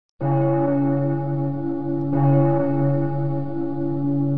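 A large deep-toned bell struck twice, each strike ringing on steadily, the second about two seconds in.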